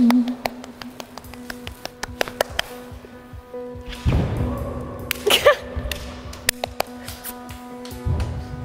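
A steady low machine hum with a few overtones, under scattered light taps and clicks of bodies and shoes moving on a glass floor. A breathy rush of noise rises about four seconds in, with a short vocal sound just after five seconds.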